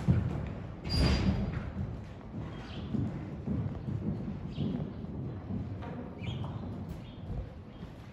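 Horse cantering on deep sand arena footing: a run of muffled hoofbeat thuds, loudest about a second in and growing fainter as the horse moves away.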